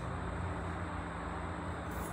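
Steady traffic noise from a nearby expressway, a continuous even wash of road noise.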